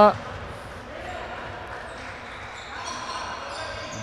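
Echoing sports-hall ambience of a handball game in play: the ball bouncing on the wooden court floor, players' footsteps and faint calls from the court.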